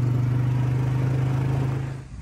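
ATV engine running at a steady speed while riding, one even low drone that fades out just before the end.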